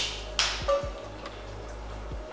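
Handling noise: a short rustle and a couple of light knocks as the aluminium scooter deck is set down across the lap and papers are picked up, over a steady low hum.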